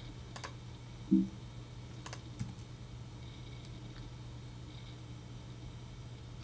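A few sparse computer keyboard and mouse clicks over a low steady hum, with one short low hum-like sound about a second in.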